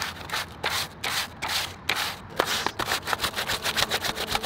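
Sandpaper rubbed back and forth by hand over a leather jacket, scuffing the finish: a run of short sanding strokes at about four a second, quickening to about six a second in the second half.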